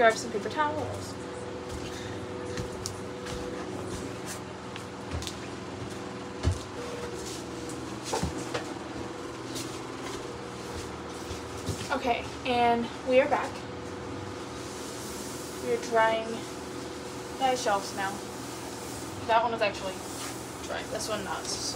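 Light knocks and taps of things being handled against wooden shelving, over a steady room hum, while shelves are wiped down with paper towels. A woman's voice murmurs a few short, wordless bits now and then.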